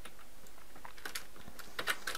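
A few separate keystrokes on a computer keyboard, sparse at first and clustering in the second half.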